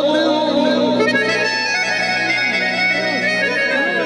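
Harmonium playing held reed chords and a melody, with a male folk singer's wavering, drawn-out vocal line over it in the first second and again near the end.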